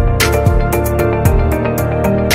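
Instrumental intro theme music for a TV talk show: held chords over a bass line, with drum hits throughout.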